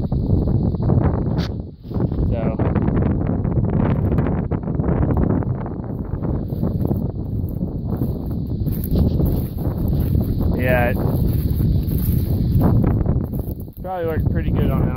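Steady, loud rumbling noise on a phone's microphone from wind and the phone being moved about, with a short muffled voice-like sound about two-thirds of the way through.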